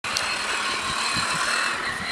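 Radio-controlled truck's electric motor and drivetrain whining steadily, with a high, thin tone on top.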